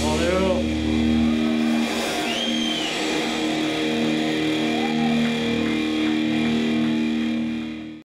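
Electric guitar and bass amplifiers left sounding after a rock song ends: a low bass note stops about a second in while steady held guitar tones drone on. A few shouts and a whoop come from the audience, and the sound fades out near the end.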